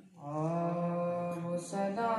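A boy chanting a marsiya (Urdu elegy) into a microphone, drawing out one long sustained note that starts about a quarter second in. Near the end there is a short break on a hissing consonant, then another held note a little higher.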